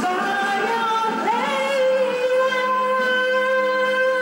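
A woman singing karaoke into a handheld microphone over a backing track; about a second in her voice slides up into one long held note.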